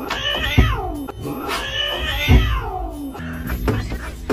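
Cat giving two long, drawn-out meows, each sliding down in pitch, the second the longer, over background music, with a low thump during each call.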